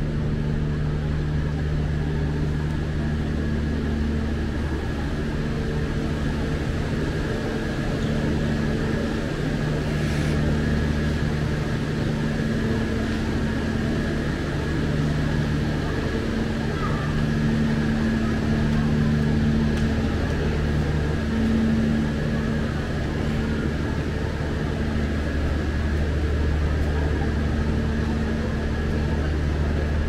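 A diesel passenger train standing at the platform with its engine idling: a steady low drone with a thin high whine above it.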